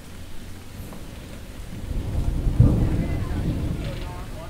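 A low rumble of thunder that swells about a second and a half in, is loudest just past the middle, then fades, over steady rain.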